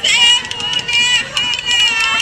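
Women singing a Jeng Bihu song in high, wavering voices, with sharp clicks through it.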